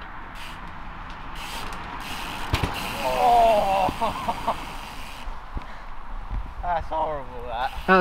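Hardtail dirt jump bike landing a drop to flat on grass: a single low thud about two and a half seconds in, then a short cry and a few lighter knocks as the bike rolls on over the grass.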